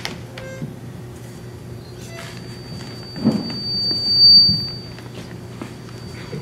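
A public-address microphone feeding back: a single thin, high whistle that swells to a peak a little past the middle and fades out near the end, over a low steady hum.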